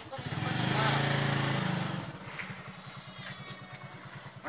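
A motorcycle engine starts and runs up for about a second and a half, then settles into a steady, even idle.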